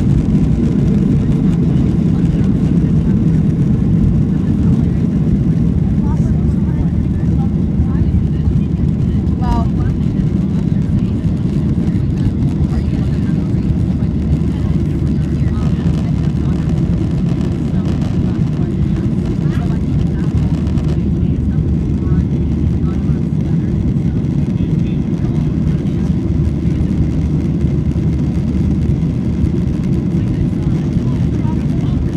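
Boeing 737's turbofan engines at takeoff thrust, heard from inside the cabin: a loud, steady, low roar through the takeoff roll, liftoff and climb-out.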